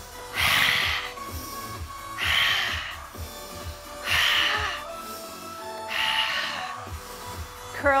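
A woman's forceful ujjayi breaths through a deliberately narrowed throat: four rushing breaths, each under a second, about two seconds apart. Background music with a steady beat plays underneath.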